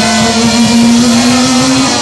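Live rock band holding a sustained, distorted note that bends slowly upward in pitch, with a wash of cymbals underneath.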